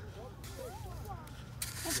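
Faint, indistinct voices in the background, then near the end a hissing scrape of a plastic toy shovel digging through damp sand.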